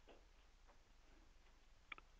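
Near silence with low room hum and a few faint, short clicks, the sharpest just before the end: computer mouse clicks.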